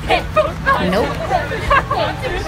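Several voices talking over one another, with a short "Nope" about a second in.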